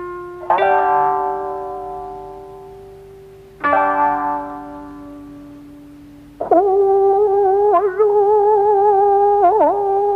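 Jiuta chamber music of voice, koto and shamisen: two plucked string notes ring out and slowly die away, then about six and a half seconds in a singer enters on a long held note that wavers and bends in pitch.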